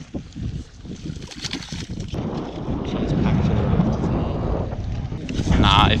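Wind buffeting the microphone: a low, rushing rumble that comes in about two seconds in and grows louder, after a quieter start with a few faint ticks.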